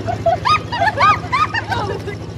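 A rapid string of short, high yelping animal calls, each rising and falling in pitch, over a steady low hum.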